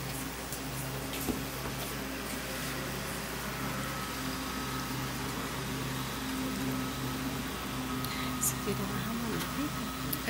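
Quiet room tone in a hall, with a steady electrical hum, a few faint clicks and faint murmuring.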